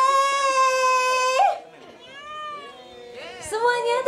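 A young woman's voice through a stage microphone draws out one long high vowel at a steady pitch for about a second and a half. A softer drawn-out call with rising and falling pitch follows, and quick chatter starts near the end.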